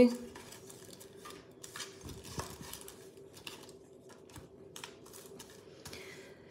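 Light clicks, taps and paper rustles of small nail-art items and sticker sheets being handled and shuffled on a tabletop, with a faint steady hum underneath.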